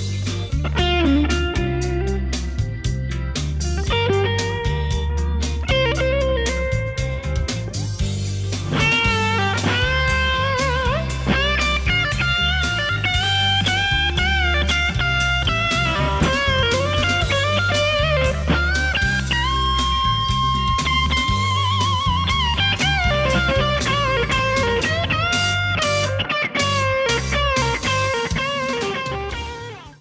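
1995 Gibson Les Paul Standard electric guitar played through an overdrive pedal into a 1963 Fender Vibroverb amp, playing a lead line of sustained notes with string bends and vibrato over a backing of bass and drums. The sound fades out at the end.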